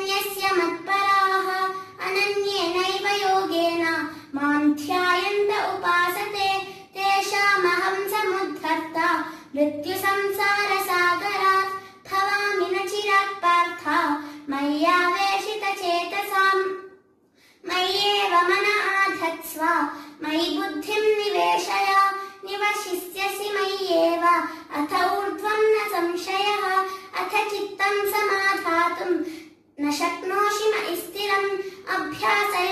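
A young girl singing solo and unaccompanied: a slow, wavering devotional invocation sung in long phrases, with one short pause about halfway through.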